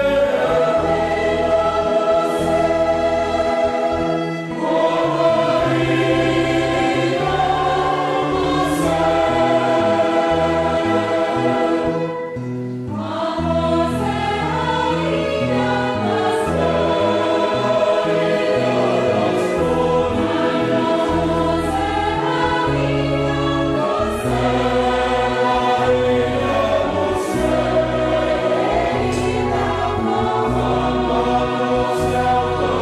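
Mixed church choir singing a hymn in held chords, with violins and a low brass horn playing alongside. There is a short break between phrases about twelve seconds in.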